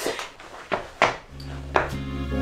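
A few light knocks, footsteps on a wooden floor, then background music comes in about halfway through with a steady low note under a soft melody.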